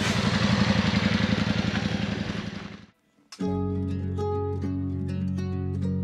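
A motorcycle engine running with a fast, even low pulse under a heavy wash of wind noise, fading out about three seconds in. After a moment of silence, background music of plucked guitar over a steady bass starts.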